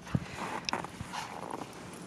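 Faint, irregular crunching steps in deep, fluffy fresh snow, with a brief high squeak just under a second in.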